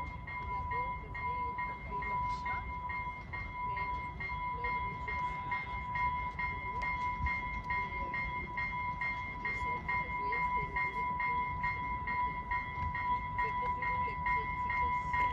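A distant passenger railcar approaches with a low, steady rumble. Over it sit a steady high tone and an evenly pulsing beep, about two and a half pulses a second.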